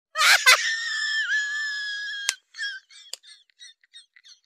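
A quick zip, then a high-pitched scream held for about two seconds that cuts off with a sharp click, followed by short squeaky chirps.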